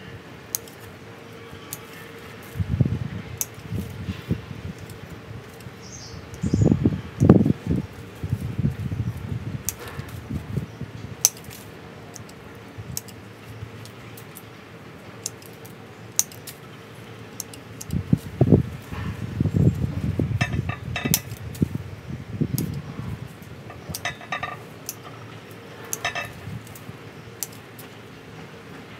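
Hand pruning shears snipping small twigs and leaves off a Ficus bonsai: a scatter of sharp, short metallic clicks. Louder low bumps and rustling come in bursts where the tree's branches are handled, the loudest about 7 and 19 seconds in.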